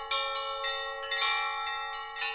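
A peal of bells, struck about twice a second, each stroke ringing on under the next.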